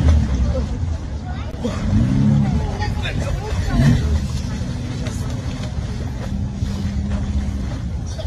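Indistinct voices of onlookers calling out over a steady low rumble.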